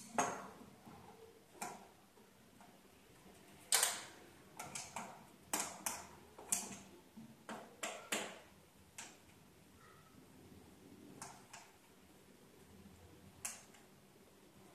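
Scattered sharp clicks and knocks of a telescope tube being handled and fitted onto an equatorial mount's head, most of them in a cluster through the middle, with one more near the end.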